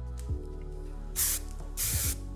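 Two short sprays from an aerosol hairspray can, the first a little over a second in and the second right after it, over soft background music.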